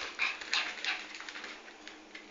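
A Yorkie puppy and another small dog playing, with a few short, high-pitched yips, mostly in the first second and fading toward the end.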